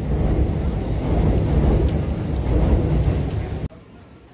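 Busy city street ambience: a steady traffic rumble with passers-by talking. It stops abruptly near the end.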